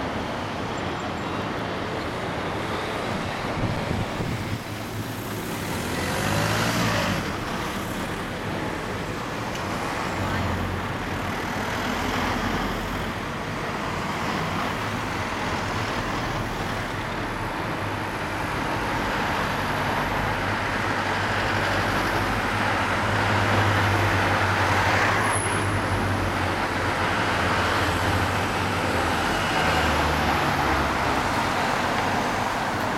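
Road traffic on a city street: the engine and tyre noise of passing vehicles, police vans among them, swelling as they go by, about seven seconds in and again later on.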